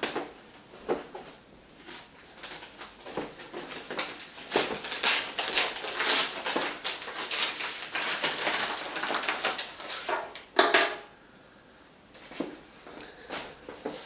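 Crinkling and rustling as a padded envelope of speaker terminals is handled and opened, with scattered clicks and one louder burst of rustling about ten and a half seconds in.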